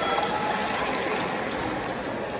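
Audience applause: a dense crackle of many hands clapping, slowly dying down.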